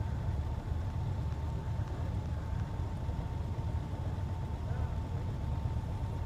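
Motorcycle engines idling while the bikes stand stopped: a steady low rumble with a thin, steady whine above it.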